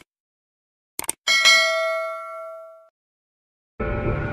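Two quick mouse-click sound effects, then a single notification-bell ding that rings and fades away over about a second and a half. Music starts near the end.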